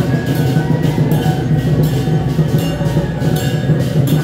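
Traditional temple procession percussion: drums, with cymbals or gongs striking about two to three times a second in a steady, loud rhythm.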